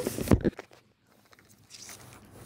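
Brief rustling and scraping with a heavy thump in the first half second, then near silence.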